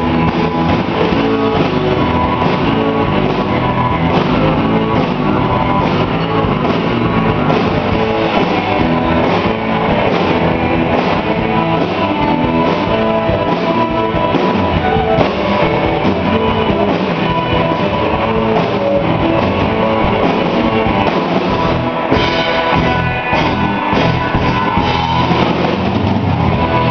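Live surf rock band playing: electric guitars and a drum kit, loud and steady, heard from among the audience. Near the end the cymbals come in brighter.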